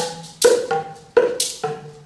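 Boomwhackers, tuned plastic tubes, struck on the floor by an ensemble in a quick syncopated rhythm, several pitches sounding together as hollow pitched hits. The strongest hits land about half a second and just over a second in.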